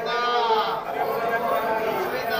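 A Hindu priest chanting mantras into a microphone, in held, wavering notes.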